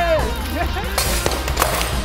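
Solid-body electric guitar smashed onto a concrete floor: a loud crash about a second in and a second, shorter crash about half a second later, over background music.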